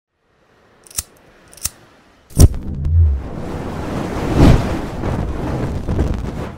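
Logo-intro sound effects: two sharp camera-shutter clicks about two-thirds of a second apart, then a heavy hit with a low boom. A rushing whoosh of flame follows, swelling about four and a half seconds in and then dying away.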